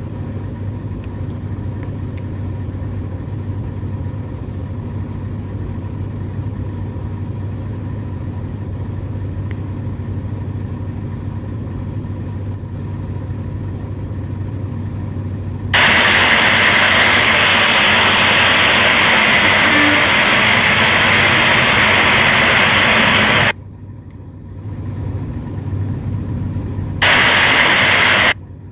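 Steady low hum of a car engine idling, heard from inside the car's cabin. About 16 seconds in it gives way to a much louder steady hiss of rain and traffic on a wet street, which cuts off suddenly a few seconds later and comes back just before the end.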